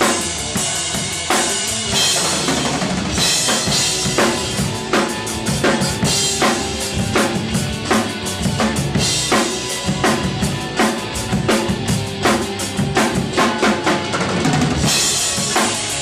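Acoustic rock drum kit played in a busy progressive-rock pattern: bass drum, snare and tom hits, with cymbal crashes washing in about three, nine and fifteen seconds in. A recorded band track plays along under the drums.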